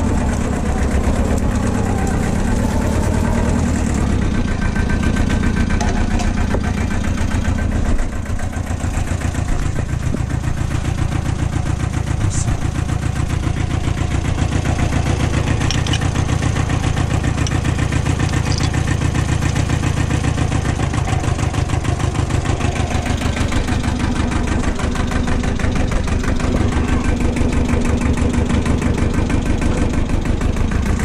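Small compact farm tractor's engine idling steadily, its note shifting slightly about eight seconds in. A few light metallic clinks come through the middle as a hook and chain are handled beside it.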